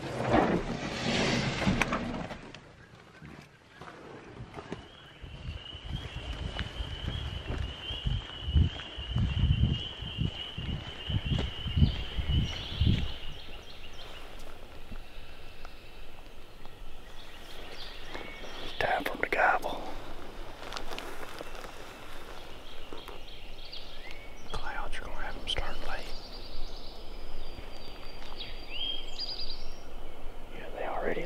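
Gear rustling briefly at the start, then footsteps through the woods under a steady high trill lasting several seconds, followed by scattered bird calls at first light.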